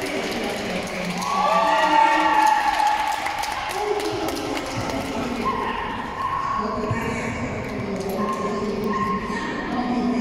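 Indistinct voices of people talking, echoing in a large hall, a little louder for a couple of seconds near the start.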